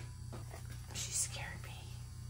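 Large round tarot cards handled and laid onto a table spread, with a soft whispery hiss about a second in, over a steady low electrical hum.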